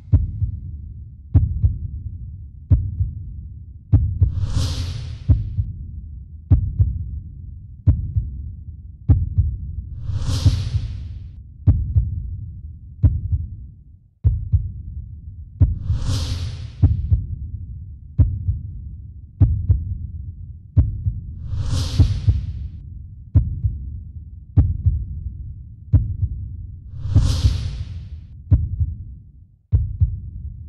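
Countdown-timer sound bed: a low thump about every 1.3 seconds, with a swoosh every five to six seconds, marking the time running out for a one-minute puzzle.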